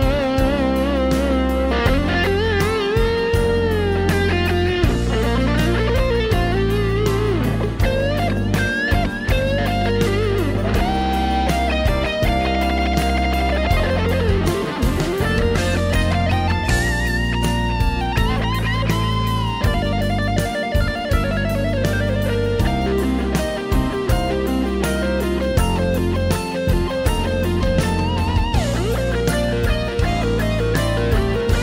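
Instrumental passage of a Polish rock song: a lead electric guitar plays a melody with long bent notes and vibrato over steady bass and drums.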